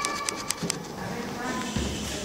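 Young children's voices at a distance, with a few sharp taps in the first second.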